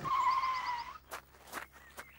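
Golf buggy's brakes squealing as it pulls up: a single high squeal that falls slightly for about a second and then cuts off. It is followed by three short taps about half a second apart.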